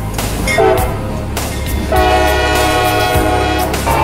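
Diesel locomotive horn sounding: a brief toot about half a second in, then one long blast of several tones from about two seconds in until just before the end, over the steady low rumble of the engine.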